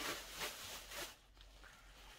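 Faint rustling from handling small objects, with a few short scratchy strokes in the first second that then die down.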